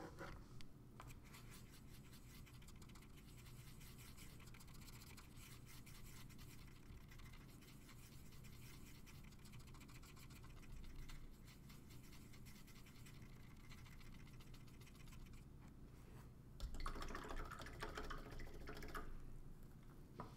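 Near silence: room tone with faint scratching and rubbing, louder for about three seconds near the end.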